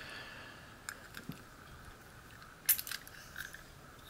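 Faint light metal clicks and small scrapes of a brass lock plug being slid out of its cylinder housing with a plug follower, the sharpest click about two and a half seconds in.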